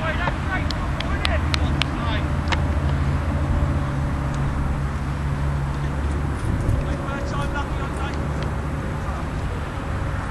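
Outdoor ambience at a football pitch: a steady low rumble that eases off about halfway through, a few sharp ticks in the first seconds, and faint distant shouts from players near the end.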